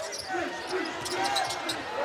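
Live basketball court sound: the ball bouncing on the hardwood floor, with faint voices and arena crowd noise underneath.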